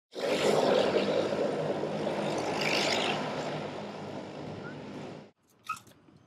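Aircraft engine noise: a steady roar with a low hum underneath, fading from about three seconds in and cutting off suddenly a little after five seconds.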